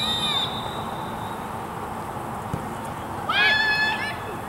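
High-pitched shouts from players or spectators on an open soccer field, with one long, high yell about three seconds in, over steady outdoor background noise.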